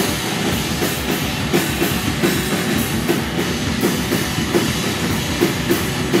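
Live band playing loud rock, a drum kit keeping a steady driving beat under the instruments, with no singing.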